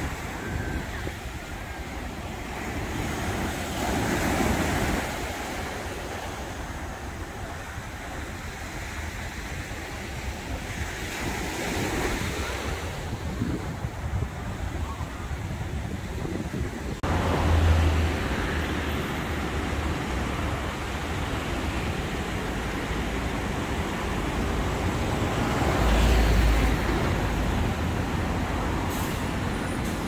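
Surf breaking on a sandy shore in rough seas at high tide, a steady rushing noise that swells and fades every several seconds, with wind buffeting the microphone in a few low thumps.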